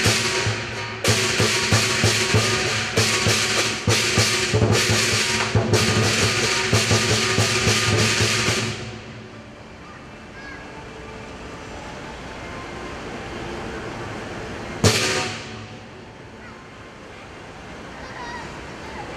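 Lion dance percussion, a drum with clashing cymbals and a gong, playing rapid loud strokes that stop about nine seconds in, leaving quieter background noise. One more loud crash comes near fifteen seconds.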